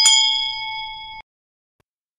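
Bell-ding sound effect for a notification bell icon: one bright ding that fades for about a second, then cuts off abruptly.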